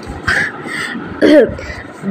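A person clearing their throat with a cough, twice: a short rough burst near the start and a brief voiced one a little past the middle.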